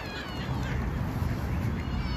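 Short, high-pitched bird calls near the start, over a steady low rumble.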